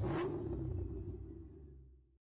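Intro logo sound effect: a swoosh hit at the start over a low rumble, fading away over about two seconds.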